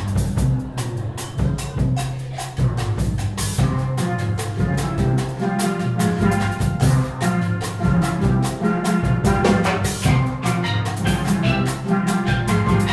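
Steel band playing a cha-cha-cha: tenor, double-second and guitar pans carry the tune over bass pan notes, with timbales, güiro and drum kit keeping a steady Latin beat.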